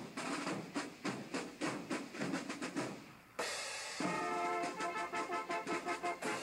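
Marching band drum line playing a rapid snare and bass drum cadence; a little past the middle the sound changes abruptly and the band's brass comes in with held notes over the drums.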